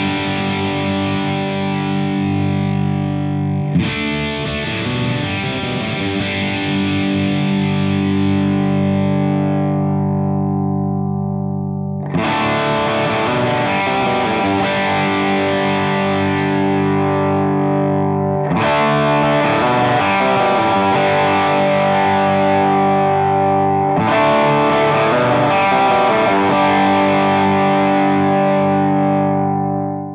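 Electric guitar chords from a PRS 513 played through a Mesa Boogie TC50 tube amp and Two Notes Torpedo Captor X: one chord already ringing, then four more struck a few seconds apart, each left to ring and slowly fade.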